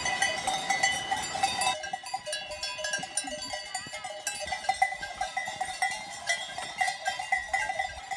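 Many cowbells ringing and clanking irregularly and overlapping as a herd of cows walks along an Alpine road. A rushing noise underneath drops away about two seconds in.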